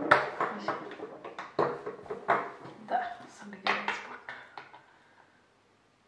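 Women's voices talking, mixed with sharp clicks and clatter of makeup containers being handled as a lipstick is sought; it all stops about five seconds in.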